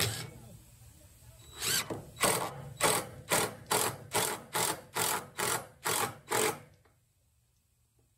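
DeWalt cordless drill driving a screw into a redwood post in about eleven short bursts, roughly two a second, then stopping.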